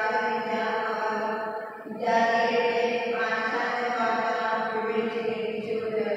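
A woman's voice chanting at a microphone in a steady, sung recitation tone, with long held phrases and a short break for breath about two seconds in.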